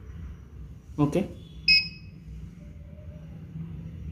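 A single short, high electronic beep from the RFID napkin dispenser's buzzer as a card is read at the EM-18 reader, over a steady low hum.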